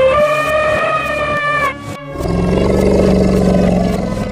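Animal-call sound effects for cartoon elephants over background music. A high, held call that rises and falls slightly ends about halfway through. After a short gap comes a lower, rougher call of about two seconds.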